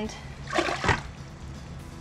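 Colostrum sloshing in a plastic gallon tube-feeder bottle as it is picked up: one short splash about half a second in, ending in a sharp knock.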